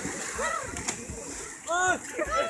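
Pool water splashing as a swimmer thrashes through it with overarm strokes, under calling voices, with a loud call near the end.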